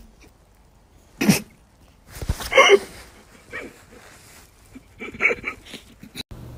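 A boxer dog making a few short sounds spread across several seconds, the loudest about halfway through.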